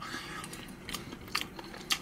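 A person quietly chewing a mouthful of soft, microwave-heated pressed pork-head meat, with a few short wet clicks from the mouth.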